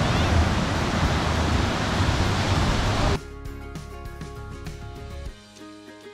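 Small waves breaking and washing in shallow surf, a steady rush with a low rumble. About three seconds in it cuts off suddenly to background music of steady held notes.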